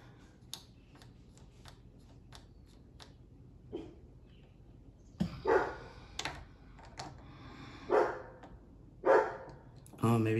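Faint clicks of small plastic and metal trigger-group parts of a paintball marker being handled and fitted. Three short, loud calls come about five, eight and nine seconds in.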